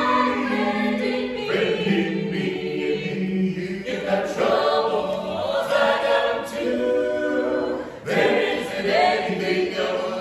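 Mixed men's and women's a cappella vocal ensemble singing in harmony, phrase after phrase, the voices ringing under a dome.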